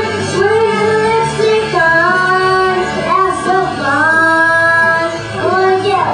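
A young girl singing live into a handheld microphone over backing music, holding long notes that slide up and down in pitch.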